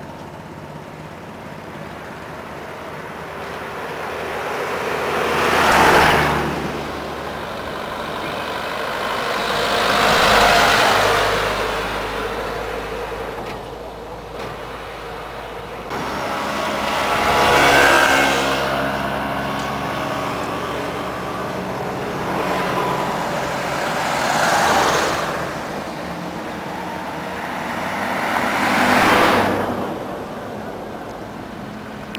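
Road traffic passing close by: about five vehicles go past one after another, each swelling up and fading away, one of them a motorbike about two-thirds of the way through.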